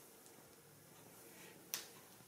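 Hands massaging an oiled back, with faint rubbing of skin, and a single sharp click about three-quarters of the way through.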